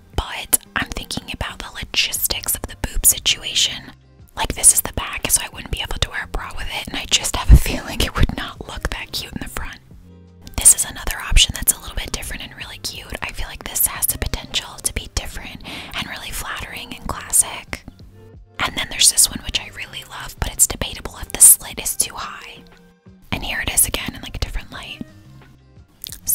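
A woman whispering close to the microphone, in phrases broken by short pauses.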